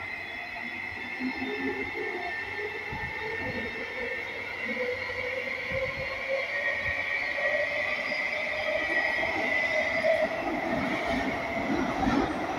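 Singapore MRT train running between stations, heard from inside the carriage: a steady rumble with a high whine and a lower tone that slowly rises in pitch, getting a little louder toward the end.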